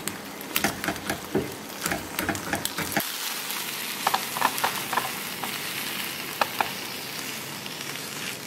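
Egg, sausage and spinach scramble sizzling in a nonstick frying pan while a silicone spatula stirs it, with many quick taps and scrapes of the spatula against the pan. About three seconds in the lower, fuller sound drops away. The steady sizzle goes on under a few more spatula scrapes and taps as the scramble is pushed out of the pan.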